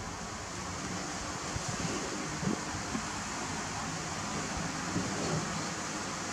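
Steady hiss-like background noise with a few faint, soft taps and rustles as young macaques pick at burger pieces on paper plates.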